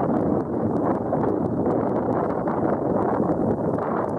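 Steady wind buffeting the camera's built-in microphone, a dull rumbling rush with no distinct events.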